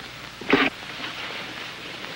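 Steady hiss of an old television soundtrack, with one short, loud sound about half a second in.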